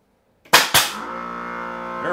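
Pneumatic pin nailer firing twice in quick succession, two sharp shots about a quarter second apart, driving pins into the cedar roof. Right after, a guitar chord of background music rings on steadily.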